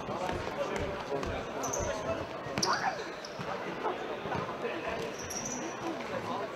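Indoor futsal play: the ball is kicked and thuds on the sports hall floor now and then, with a few short high squeaks from shoes on the court. Spectators chat throughout.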